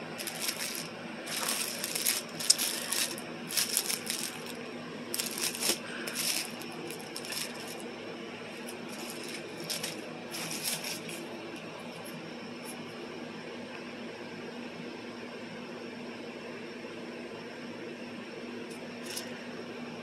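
Plastic packaging crinkling in irregular bursts as it is handled, for roughly the first eleven seconds, then faint room tone with a low steady hum.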